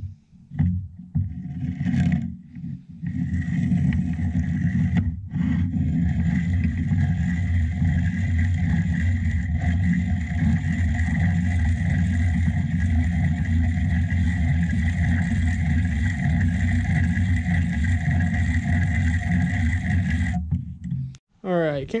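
Hand-crank piston ring filer grinding the end of a second compression ring to open up its gap. It starts about three seconds in as a steady, even grinding with a thin whine in it, and stops just before the end.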